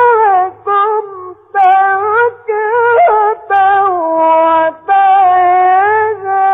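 Quran recitation: a single high voice chanting in long, ornamented held notes with a slight waver, broken into short phrases by brief pauses for breath.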